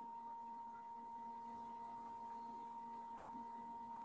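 Faint steady electronic tone, high-pitched, with a weaker hum beneath it, with a soft click about three seconds in.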